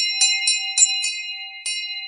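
Sound effect of a subscribe-button animation: a quick run of mouse clicks, about four a second, over a ringing bell chime. A last click comes past the middle, and the chime fades slowly.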